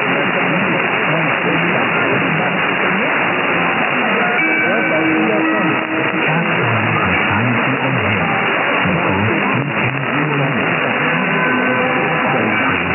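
Weak mediumwave AM broadcast heard through an SDR receiver in narrow USB mode: the programme audio is buried in hiss and static, with faint speech and music fading in and out. From about four seconds in, held musical notes come through more clearly above the noise.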